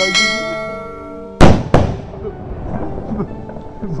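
Two sutli bombs (twine-wrapped firecrackers) go off in the burning petrol. There is one very loud bang about a second and a half in, and a second bang about a third of a second later. Before them a bell-like chime rings for about a second.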